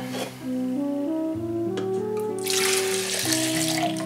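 Water pouring out of an animal horn in a rush lasting about a second and a half, starting a little past halfway, over background music with slow sustained notes.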